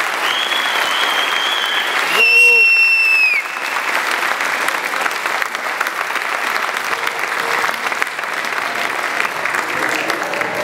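Concert audience applauding steadily, with two long, high whistles and a shout in the first three and a half seconds, the second whistle falling away at its end.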